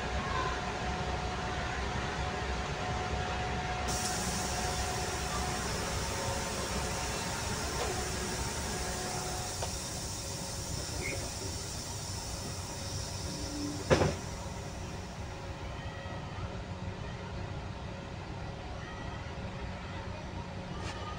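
Steady low engine rumble inside a ferry's enclosed steel car deck, with a hiss that comes in about four seconds in and fades later on. A single sharp knock stands out about fourteen seconds in.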